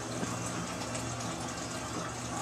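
Electric desk fan running, a steady rushing noise with a constant low hum.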